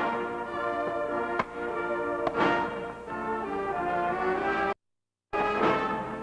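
Orchestra playing, led by brass, with two sharp hits in the first half. The sound cuts out completely for about half a second near the end.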